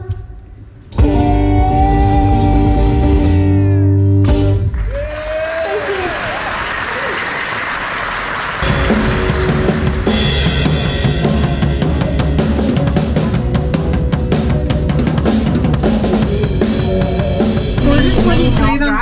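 Live band music: a held chord with deep bass, then a sung line over a cymbal wash. About halfway through, a full drum kit comes in with a steady beat under the band.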